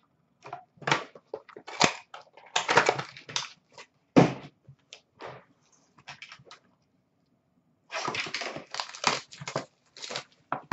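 Hands handling cardboard trading card boxes and packs on a glass display counter: an irregular run of clicks, taps and rustles, busiest about three seconds in and again near the end.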